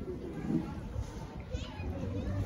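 Voices of people nearby, children among them, in short snatches over a steady low rumble.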